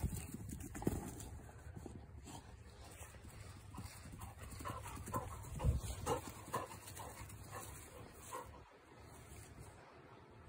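Black Labrador retriever panting quietly, with a few louder breaths about half a second apart around the middle.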